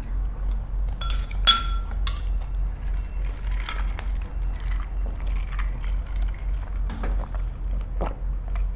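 Eating utensils clinking against tableware two or three times about a second in, the loudest with a short ring. Softer small clicks and eating sounds follow over a low steady hum.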